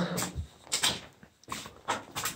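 A few short scrapes and scuffs of footsteps on a gritty concrete floor strewn with rubble.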